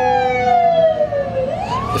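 Emergency vehicle siren wailing, its pitch falling slowly and then sweeping back up near the end, heard from inside a car.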